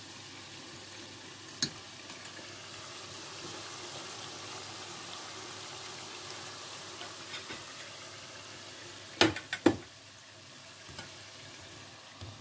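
Chebakia (sesame dough pastries) frying in hot oil: a steady sizzle. There is a sharp click about a second and a half in, and two or three loud knocks near the end.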